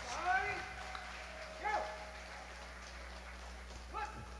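A few brief raised voices in a hall, three short rising-and-falling calls, the loudest near the start, over a low steady hum.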